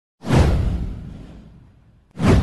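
A whoosh sound effect with a deep low rumble under it, swelling in suddenly just after the start and fading away over about a second and a half.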